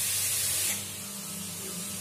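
A steady hiss with a faint low hum under it. The hiss is stronger for the first moment, then drops to a lower, even level.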